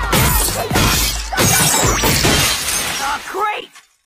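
Cartoon glass-shattering sound effect as a punch smashes the screen, with voices yelling over it; it all fades out just before the end.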